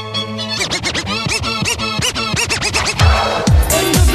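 Hip house dance track breaking into a record-scratching passage: the kick drum drops out, repeated scratches sweep up and down in pitch for a couple of seconds, and the four-on-the-floor beat comes back near the end.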